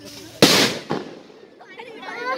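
A firecracker going off with one sharp, loud bang about half a second in, followed by a smaller crack a moment later.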